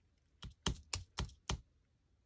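Five quick light clicks or taps, about four a second, from hands handling a paper sheet on a cutting mat.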